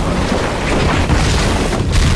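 Loud, dense rushing noise like a gust of wind, with a deep rumble underneath. It grows brighter in the upper range over the second half.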